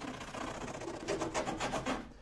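Four-in-hand shoe rasp filing a hardened epoxy drip down on a wooden kayak's glassed hull, scratching away at first, then a run of quick strokes in the second half. The rasp is pressed flat on the surface, knocking off the drip's high spot.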